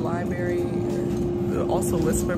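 A young woman's voice speaking indistinctly with a congested throat, over a steady hum.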